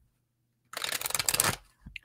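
Tarot cards being shuffled in the hands: a quick rattling run of card flicks lasting under a second, starting about two-thirds of a second in.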